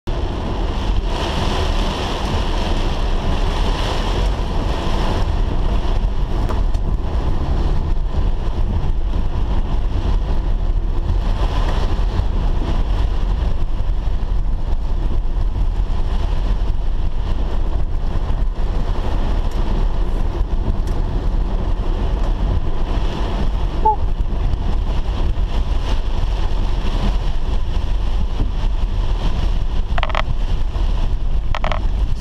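Steady car cabin noise while driving in heavy rain: a low road-and-engine rumble under an even wash of rain on the windscreen and wet tyres.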